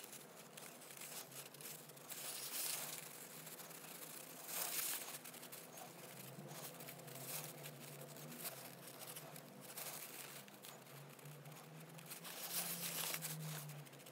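Faint rustling and crinkling of paper tissue being dabbed and wiped over a painted plastic miniature, in soft uneven swells, a little louder near the end.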